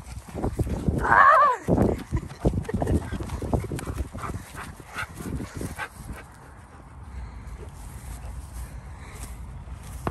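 Dogs running and playing close to the microphone: irregular thumps of paws and handling knocks over the first six seconds, with a short cry that falls in pitch about a second in, and a steady low rumble underneath.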